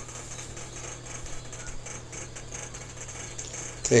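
Quiet room tone: a steady low hum with faint scattered clicks, until a man says "Okay" near the end.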